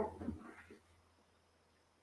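Near silence on a video call line: a faint steady low hum, with the end of a man's voice fading out in the first half second.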